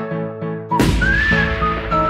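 Background music with a whistled melody. A little under a second in, a sudden rush of noise and a deep bass come in.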